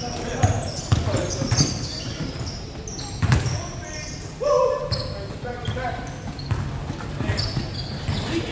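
Basketball bouncing on a hardwood gym floor in repeated knocks, with short high sneaker squeaks and players calling out in the echoing hall. A longer shout comes about halfway through.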